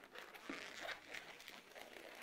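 Faint rubbing and handling of a long latex modelling balloon as it is worked into a pinch twist, with a soft touch about half a second in.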